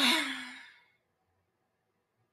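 A woman's sigh: a sudden breathy exhale with a low voiced note under it, fading away within about a second.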